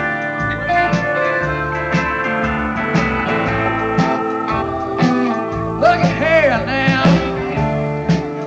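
Live blues-rock band playing an instrumental passage on electric guitars, bass guitar, drums and Hammond XK organ. From about six seconds in, a lead line bends and wavers in pitch over the band.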